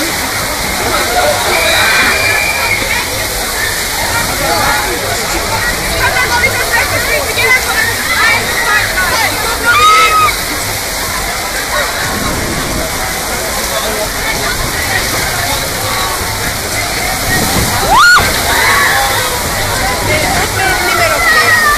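Torrential rain and gusting wind of a violent thunderstorm, a loud steady rush, with people shouting in the distance and a sharp rising cry near the end.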